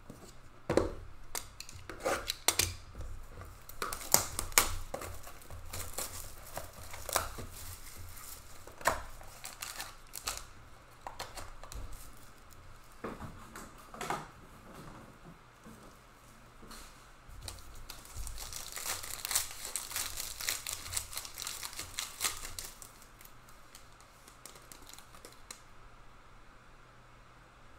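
Rigid plastic card holders clacking as they are set down and handled, then a trading-card pack wrapper being torn and crinkled for a few seconds about three-quarters of the way through.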